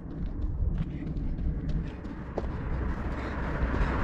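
Wind rumbling on the microphone, with faint, quick ticks of running footsteps on the road shoulder, growing louder as the runner approaches.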